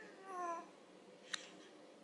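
A five-month-old baby's short, whiny coo, about half a second long and slightly falling in pitch, followed a second later by a single faint click.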